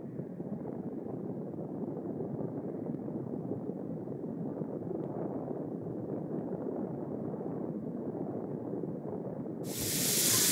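A steady, muffled background rush with no distinct events, dull and without any high end.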